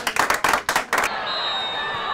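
A group clapping their hands quickly and unevenly to rally themselves, which stops abruptly about a second in and gives way to the steady hum of a stadium crowd.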